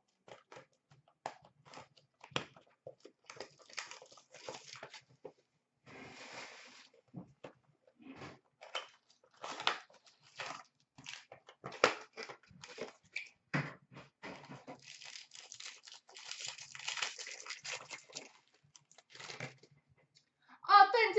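Small cardboard trading-card boxes being torn open and handled by hand: scattered sharp clicks and snaps, with stretches of tearing and rustling of cardboard and packaging.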